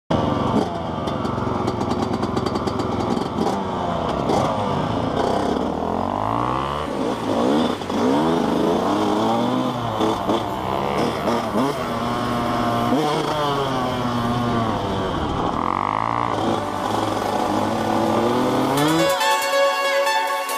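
Dirt bike engines, among them a Yamaha YZ125 two-stroke, revving and shifting. The pitch climbs and drops over and over as they accelerate through the gears. Music comes in about a second before the end.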